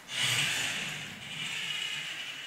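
Balancing robot's two geared DC motors whirring as it drives its wheels to catch itself after being pushed. A high whir that starts suddenly and fades as the robot settles back into balance.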